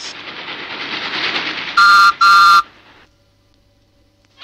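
A rushing hiss that grows louder, then two short toots of a postman's whistle, the read-along record's signal to turn the page.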